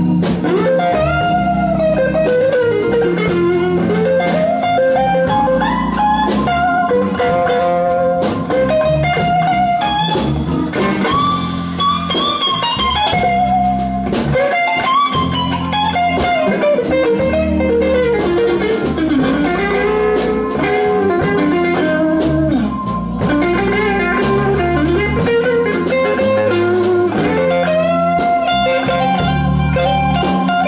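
Live blues electric guitar solo on a Telecaster-style guitar, full of bent notes that slide up and down, played over the band's bass and drums.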